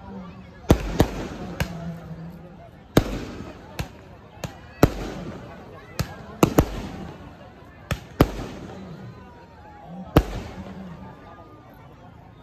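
Firecrackers going off in an irregular series of about a dozen sharp bangs, each with a short echoing tail, over the chatter of a crowd.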